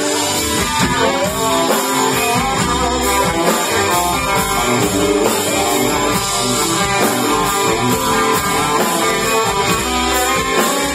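Live band playing an instrumental passage without vocals: electric and acoustic guitars over upright bass and drums, with a steady beat.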